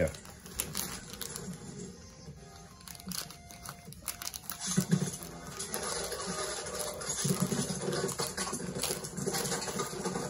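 Thin plastic bag crinkling and rustling in the hands, with short crackles throughout as it is handled and cut open with scissors.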